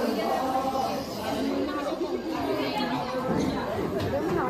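Several people talking at once: crowd chatter, with overlapping voices.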